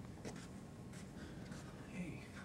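Faint room tone with a few soft scuffs and ticks scattered through it.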